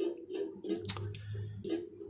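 Quiet, irregular light clicks and ticks, a few per second.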